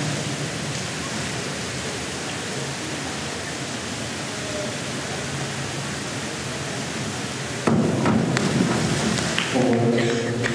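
Steady noise of an indoor pool hall, then about three-quarters of the way in a sudden loud burst with a few sharp knocks: a springboard diver's takeoff and entry splash.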